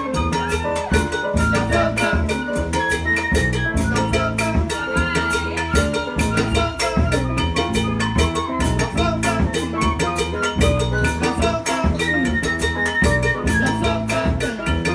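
Live Latin-jazz band playing an instrumental passage, a drum kit keeping a steady beat over a moving bass line, with sustained melodic notes above.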